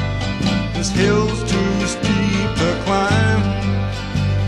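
Acoustic country-style instrumental break with no singing: plucked acoustic strings over a steady bass line.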